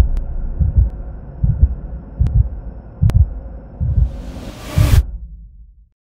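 Produced intro sound effect: a slow pulse of deep low thumps, about one every 0.8 seconds, over a low rumble. A swelling whoosh builds near the end and stops about a second before the singing starts.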